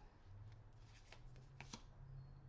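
Faint rustle and a few soft ticks of a tarot card being handled and turned over from the spread.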